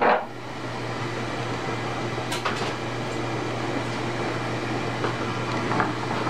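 A steady mechanical hum, with a brief laugh at the start and a single sharp click a little over two seconds in.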